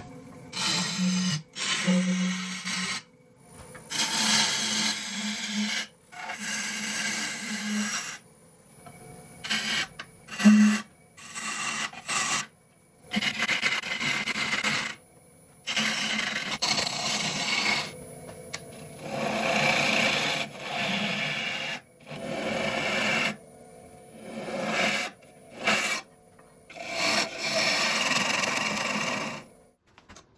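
Turning tool cutting a spinning epoxy resin bowl on a wood lathe, a hissing scrape heard in about a dozen short passes of one to three seconds, each stopping abruptly.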